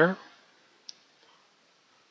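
A single computer mouse click about a second in, against faint room tone, just after the last word of speech trails off.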